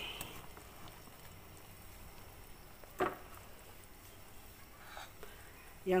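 Pot of chicken-feet soup bubbling at a steady rolling boil, with a single sharp click about halfway through.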